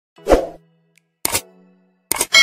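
Two short pop sound effects from an animated video intro, about a second apart, each dying away quickly, with a faint low steady tone between them.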